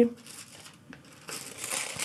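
Paper packaging crinkling as it is handled, starting a little past halfway after a quiet moment.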